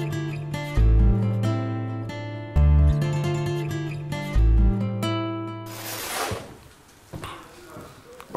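Background music with plucked, guitar-like notes over a deep bass note that returns about every two seconds. The music stops about six seconds in, giving way to a short burst of noise and then quieter room sound.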